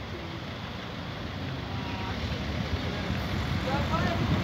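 Street traffic noise growing louder as a tram and road vehicles approach: a low rumble that builds steadily, with a few short chirps near the end.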